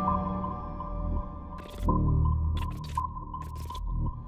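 Background music for a film's title sequence: a held drone with deep low swells. A few sharp clicks fall in the second half.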